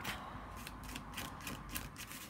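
A paintbrush loaded with fairly dry paint being brushed over paper and card in quick, scratchy strokes, several a second.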